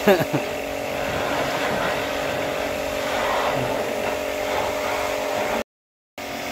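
A steady background drone like a running motor, with a few spoken words at the very start; the sound drops out completely for a moment near the end.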